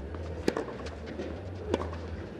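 Tennis ball struck by rackets twice during a rally, sharp hits about a second and a quarter apart, over a steady low background hum.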